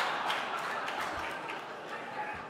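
Audience laughter filling a large hall, slowly dying away.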